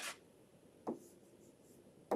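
Faint scratching and tapping of a stylus on a tablet screen as a letter is handwritten, with one short soft tap about a second in.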